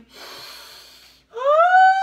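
A woman's exaggerated, voiced yawn: a long breathy intake, then a loud 'oh' that slides up in pitch about a second and a half in and holds high.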